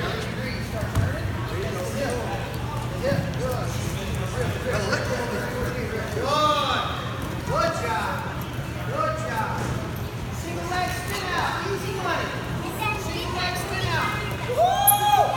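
Indistinct voices and short shouted calls echoing around a gym, several of them from about halfway in, over a steady low hum from a large floor fan.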